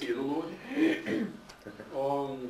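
Speech: a man's voice for about the first second and a half, then quieter.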